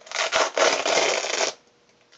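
A fastening on a Mary Kay travel roll-up makeup bag is pulled open as one of its clear pouches is detached: a loud rasping tear lasting about a second and a half that cuts off suddenly.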